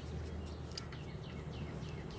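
Faint bird chirps, a few short falling notes about a second in, over a steady low background hum.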